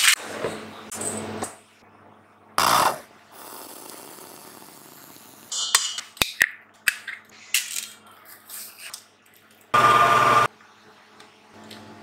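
Short bursts of kitchen noise while a cake is made: scissors cutting baking paper, a couple of sharp taps as an egg is cracked on a steel mixing bowl, and batter being spread in a paper-lined loaf tin. Two louder bursts of clatter stand out, about 3 s and 10 s in.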